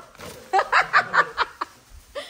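A person laughing: a quick run of short, breathy laughs lasting about a second, starting about half a second in.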